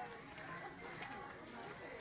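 Faint, distant voices murmuring in the background, with a light click about halfway through.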